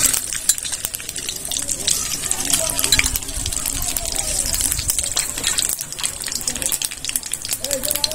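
Nigella seeds (kalonji) sizzling and crackling in hot mustard oil in an aluminium kadai, with dense irregular pops, while a steel spoon stirs them.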